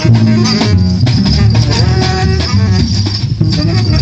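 Improvised acoustic music from a plucked upright double bass and a hand-played drum, with a dense run of rattling percussive strokes over a moving bass line.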